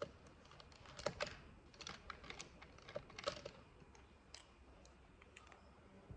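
Faint, scattered small clicks and taps, several in quick clusters and a few single ones later, from small study items such as cards, papers and a pen being handled on a table.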